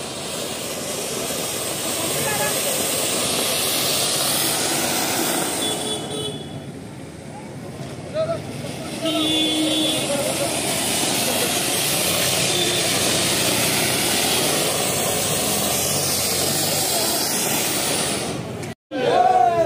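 Ground fountain fireworks (flower-pot fountains) spraying sparks with a loud, steady hiss. The hiss eases off about six seconds in and builds again a few seconds later.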